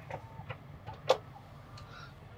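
A few light clicks and taps at a Tesla Cybertruck's door as someone tries to open it, the sharpest about a second in, over a faint low hum.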